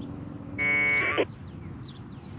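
A burst of 1200-baud AFSK packet radio data from the transceiver's speaker: a raspy two-tone buzz lasting under a second, starting about half a second in, over a low background hiss. The incoming packet carries the bulletin board's reply to a message-list command.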